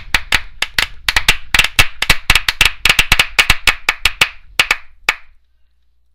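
Applause from a small group: sharp, separate hand claps at an uneven pace, stopping about five seconds in.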